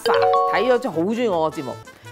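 A short doorbell-like chime sound effect, a few bell notes entering one after another and stepping upward, lasting under a second.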